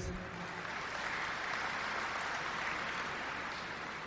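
Audience applauding, a steady patter that fades slightly near the end.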